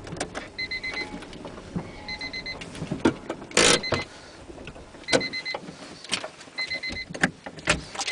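Inside a stopped car's cabin with the engine no longer running: an electronic beeper sounding a short rapid string of beeps about every one and a half seconds, among scattered clicks and knocks from inside the car. A loud scraping rustle comes about three and a half seconds in.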